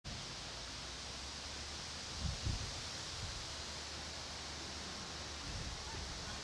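Steady outdoor background hiss with a low hum beneath, broken by a few brief low bumps about two and a half seconds in.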